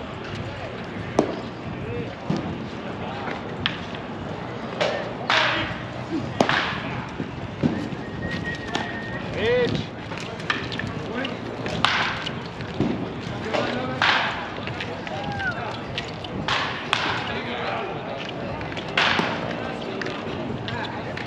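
Spectators talking in the background, with sharp knocks and short loud swishy bursts every few seconds.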